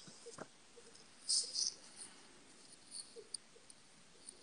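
Faint scratching of a pen nib on paper as cursive letters are written: a couple of short, scratchy strokes about a second and a half in, with a few light ticks.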